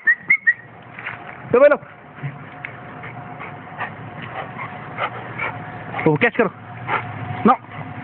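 Labrador retrievers giving short, scattered barks while they run about, with two quick whistles right at the start.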